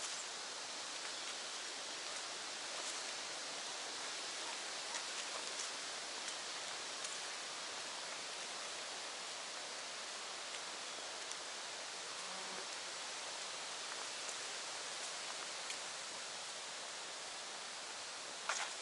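Steady, even outdoor hiss with a few faint, light ticks scattered through it.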